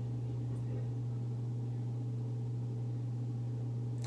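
A steady low hum with a faint hiss over it, unchanging throughout; nothing else stands out.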